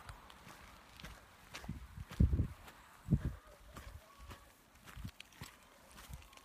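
Footsteps of a person walking with a handheld camera, irregular soft thumps with two louder ones about two and three seconds in.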